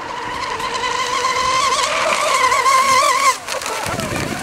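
1/8-scale RC hydroplane's motor running flat out, a high whine that grows louder as the boat passes, then drops away sharply about three seconds in.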